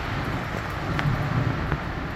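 Wind buffeting the microphone outdoors: a low rumble that swells in the middle, over a steady hiss.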